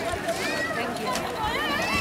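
Several people's voices calling out and chatting over one another, with a few faint knocks.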